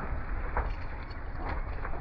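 Steady low rumble of wind and boat noise on the water, with a few faint short splashes from a hooked musky thrashing at the surface.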